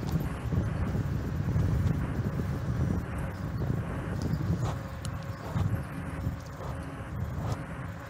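Wind buffeting the microphone of a camera on a moving bicycle, a steady uneven rumble, with bicycle tyre noise on asphalt and a few faint clicks and rattles.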